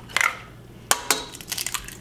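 Raw eggs being cracked on the rim of a stainless steel stand-mixer bowl: two sharp knocks less than a second apart, the second the louder, followed by a few faint ticks of shell.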